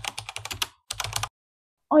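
Computer keyboard typing sound effect: two quick runs of key clicks with a short pause between, the second run shorter, laid under text being typed onto the screen.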